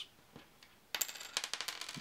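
Small hollow plastic game discs, each made of two plastic halves fused together, being tapped and set down on a wooden tabletop. There is a quick run of light, hollow clicks starting about a second in.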